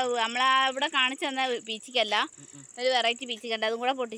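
A child's voice making long, wavering sounds, with short breaks, over a steady high-pitched chirring of crickets.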